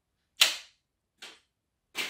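Rubber band of a 3D-printed paper-plane launcher snapping forward as it fires the plane: a sharp crack about half a second in, a fainter click about a second later, and another sharp crack near the end.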